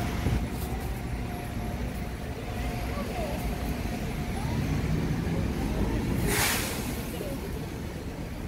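Street traffic: a steady low rumble of passing vehicles, with voices in the background and one short burst of hiss about six seconds in.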